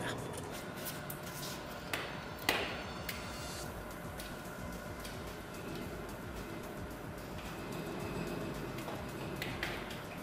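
Two sharp clicks of metal parts and tools being handled about two seconds in, then quiet handling sounds over a steady low background hum while a pressure gauge is fitted to copper heating pipework.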